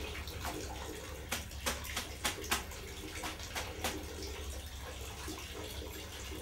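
Water splashing and sloshing in a plastic tub, in a quick irregular run of about a dozen splashes over the first four seconds, over a steady low hum.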